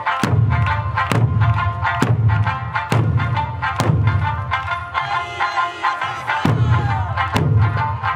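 Eisa drum dance: large barrel drums (ōdaiko) struck together in heavy beats about once a second over Okinawan eisa music. The drum beats drop out for a couple of seconds in the middle, then resume.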